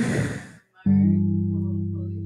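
A short laugh, then about a second in a low note or chord struck on a hollow-body electric guitar that rings on and slowly fades.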